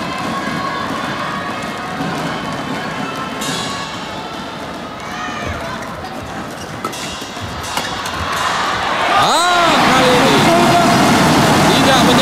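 Indoor arena crowd noise during a badminton rally, with a few faint racket-on-shuttle hits. About nine seconds in the crowd rises into a swelling shout and then loud sustained cheering as the home Indonesian pair win the point.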